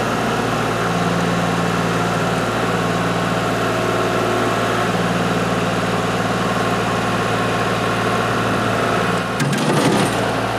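Kubota L3301's three-cylinder diesel engine running steadily while the hydraulic front loader lowers its bucket, with a low hum joining about a second in. Near the end, a short crunching burst as the steel can of vegetable juice is crushed under the bucket and bursts.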